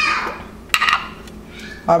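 A metal spoon knocks once with a short clatter about three quarters of a second in.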